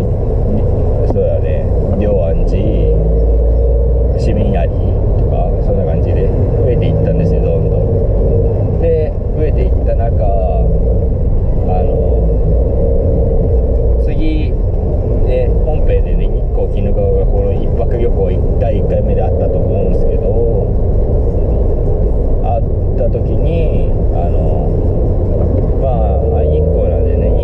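Steady low rumble of a car's engine and road noise heard inside the cabin while it is being driven.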